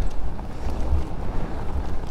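Wind noise on the microphone with tyre noise while an electric mountain bike is ridden along a forest trail: a steady low rumble.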